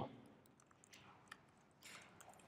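Faint computer keyboard typing in near silence: a few soft key clicks, with a small cluster near the end.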